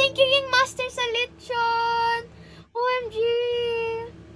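A young woman singing over a backing track, with two long held notes, one about one and a half seconds in and one near the end.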